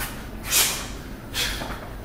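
A boxer's sharp, breathy exhales, two of them about a second apart, blown out as he throws punches.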